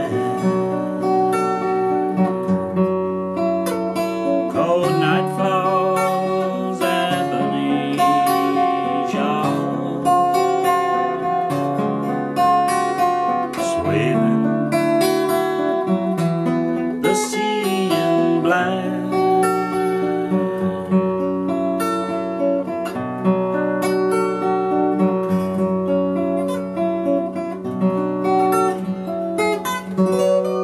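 Acoustic guitar, a Tanglewood TW40, played fingerstyle in an instrumental passage without singing: picked melody notes over a steadily repeated low bass note.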